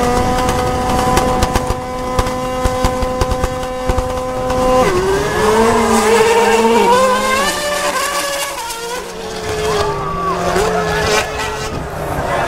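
A Formula 1 car and a Ford Fiesta rallycross car held at steady high revs on the start line for about five seconds, then launching. At the launch the engine note drops suddenly, then wavers and steps up and down as the cars accelerate away through the gears.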